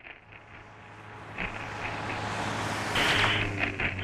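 Film-trailer sound effects: a low rumbling noise that builds steadily in loudness, with a louder rushing surge about three seconds in.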